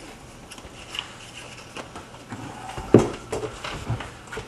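Light clicks and knocks of a Kydex holster and pistol being picked up and handled on a workbench, sparse at first and busier in the second half, with one sharp click about three seconds in.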